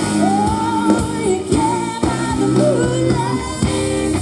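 Woman singing lead live with a pop-rock band, holding long notes that waver in pitch over the band's steady accompaniment.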